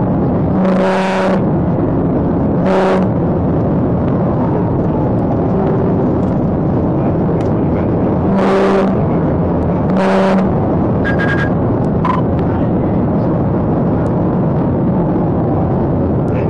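Steady road, tyre and engine noise inside a patrol car driving at highway speed in a pursuit. It is broken by four short horn blasts, two near the start and two about eight to ten seconds in.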